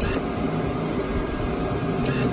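MIG welder running with a steady mechanical hum while its wire-feed drive rollers are set up for aluminium wire.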